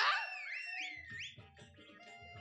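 A comic sound effect: a quick run of whistle-like electronic pitch glides, swooping up and down several times and fading out by about a second and a half, followed by faint low thumps.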